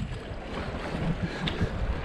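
River water rushing and splashing around an inflatable paddleboard running a small rapid, with wind rumbling on the microphone.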